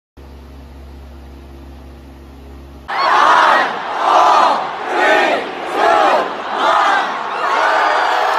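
A faint steady hum, then from about three seconds in a small group of women and girls shouting together in time, about one loud shout a second, counting down to midnight at New Year.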